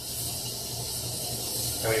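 Steady background hiss with a low, even hum beneath it. No separate event stands out.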